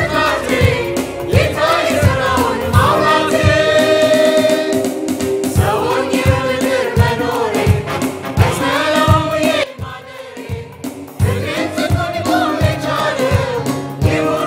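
Church choir singing a gospel song in long held phrases over a steady drum beat. The music drops back briefly about ten seconds in, then the choir comes in again.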